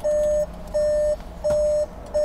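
A 2019 Skoda Superb's warning chime beeping steadily: three even beeps of one pitch, each about half a second long, a little more than one a second.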